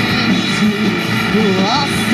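Live rock band: a male voice singing over a steady, droning wall of distorted electric guitar, with a rising sung phrase near the end.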